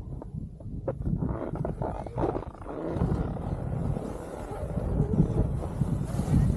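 Wind buffeting a helmet-mounted camera's microphone while skiing downhill, a gusty low rumble that grows louder in the second half, mixed with skis sliding on packed snow.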